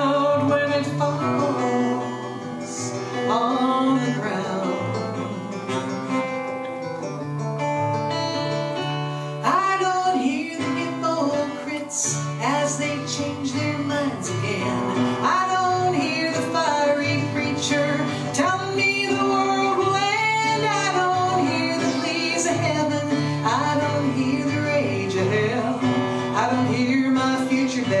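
Acoustic guitar played live with a woman singing a melody over it.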